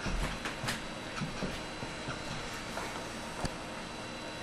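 Steady outdoor background hiss with a few irregular soft thumps and clicks, bunched in the first second and a half, and one sharp click near the end.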